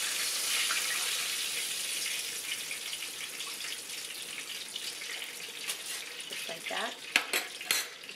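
Hot oil sizzling in a stainless steel frying pan around a breaded tilapia fillet that is lifted out of the oil. The sizzle eases off over the seconds, and a few sharp clinks of the metal spatula come near the end.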